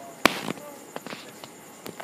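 A few sharp pops or knocks, the loudest about a quarter second in and fainter ones later, over faint background voices.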